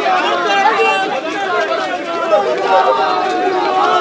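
Crowd of men talking and shouting over one another, many voices at once with no single speaker standing out.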